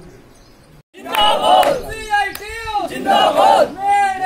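A group of men shouting political slogans in unison, loud chanted calls of about a second each, repeating. They start about a second in, after a brief tail of narration and a short silence.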